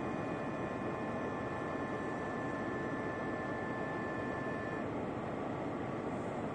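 Steady interior drone of an X73500 diesel railcar standing still, its engine idling, with faint steady whines on top; one of the whines stops about five seconds in.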